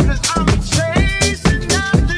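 Deep, soulful house music. A steady beat runs at about four hits a second, with a pitched melody line over it in the second half.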